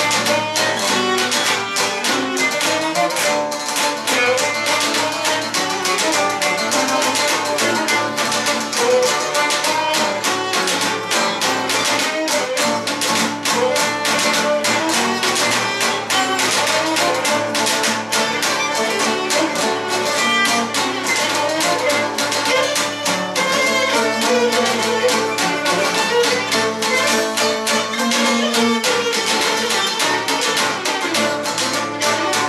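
Cretan lyra playing a siganos dance melody over steady rhythmic strumming on the laouto.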